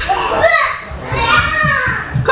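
Several children's high-pitched voices, loud and unintelligible, calling out over one another.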